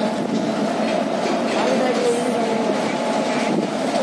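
WAP-4 electric locomotive moving slowly along a station track, giving a steady rumble of running noise. Voices can be heard in the background.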